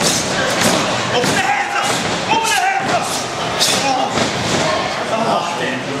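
Repeated thuds from a wrestling ring as wrestlers hit and grapple on the mat, mixed with shouting voices.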